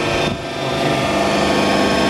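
Boy 22 D injection moulding machine's hydraulic pump motor running with a steady hum, its oil still below the recommended 40 degrees.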